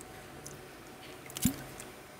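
Sipping water from a plastic bottle, with one soft gulp about one and a half seconds in.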